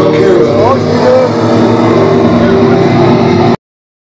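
Loud, distorted droning noise from a live noise-rap set, with voices mixed into it. It cuts off abruptly about three and a half seconds in.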